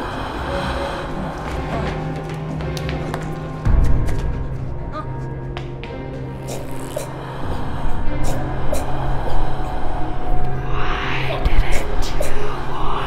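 Horror film score: low sustained drone notes, broken by a sudden deep boom about a third of the way in, then pulsing low notes building up. Breathy voice sounds come in near the end.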